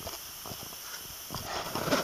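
Handling noise from someone moving about inside a car cabin: a few soft knocks, then a louder rustle and scrape building to a thump near the end.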